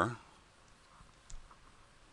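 A man's word trailing off at the very start, then a few faint, short clicks in near quiet, the clearest a little past a second in.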